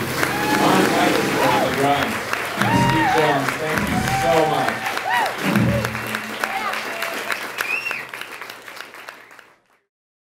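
Audience applauding at the end of a song, fading out near the end.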